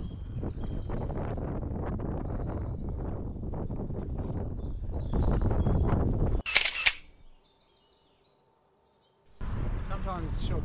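Wind buffeting the microphone and tyre noise from a Brompton folding bike being ridden along a road, getting louder about five seconds in. A brief, sharp, high sound about six and a half seconds in. Then near silence, before a man's voice starts just before the end.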